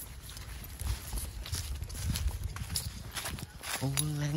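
Footsteps on grass strewn with dry fallen leaves: an uneven series of soft crunches over a low rumble on the microphone.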